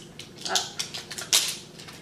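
Packaging being rustled and pulled off a hand soap bottle: short crinkling rustles, the loudest about a second and a half in, with a smaller one about half a second in.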